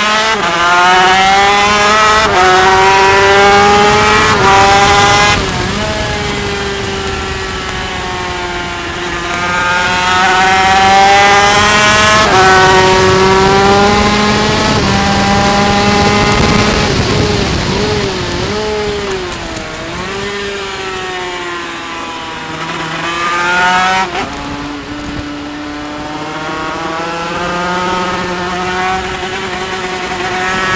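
Yamaha TZ250 two-stroke racing engine at high revs, heard from an onboard camera. Its pitch climbs steadily through each gear and drops sharply at every upshift, several times a few seconds apart. Midway it wavers and falls as the rider brakes and downshifts for a corner, then climbs again, with a steady rushing noise underneath.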